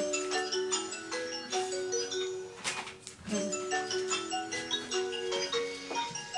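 A mobile phone's musical ringtone playing: a short melody of held notes that repeats, with a brief pause about halfway through.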